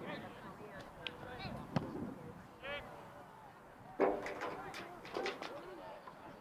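Indistinct shouts and calls from players and onlookers at an outdoor soccer game, with a single sharp thud a little under two seconds in and a louder burst of shouting about four seconds in.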